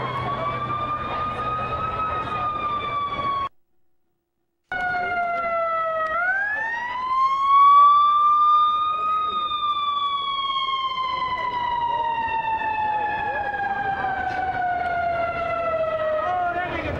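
Emergency vehicle siren wailing in slow rising and falling sweeps: a rise, a fall, then a quicker rise about six seconds in followed by a long slow fall. The sound cuts out completely for about a second near the four-second mark.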